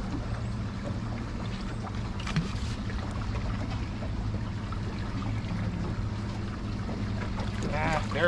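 Steady low hum of a motor on a fishing boat, under wind and water noise, with one brief click a couple of seconds in.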